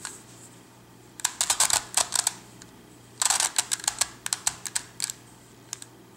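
Plastic layers of a circle crystal pyraminx twisty puzzle clicking as they are turned by hand: a quick run of clicks about a second in, a longer run about three seconds in, and a couple of single clicks near the end.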